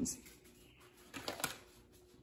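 A brief crinkling rattle about a second in, from a bag of whole coffee beans being handled.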